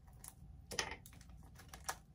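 Tarot cards being handled on a table: a few faint clicks and a brief rustle, the clearest a little under a second in and another just before the end, as a card is drawn from the deck.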